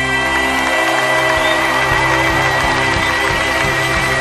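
Live concert music: a male singer holds one long high note over band backing, the note wavering into vibrato about halfway through.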